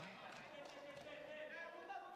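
Faint room tone of an indoor sports hall: a low, even background with no distinct events.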